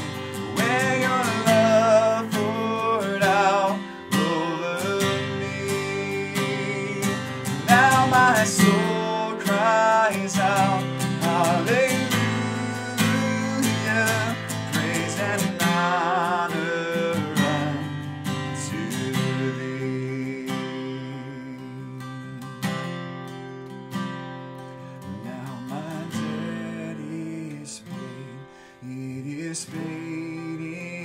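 Acoustic guitar strummed in a slow worship song, with a man singing over it; the singing is strongest in the first half, and the guitar carries on more on its own later.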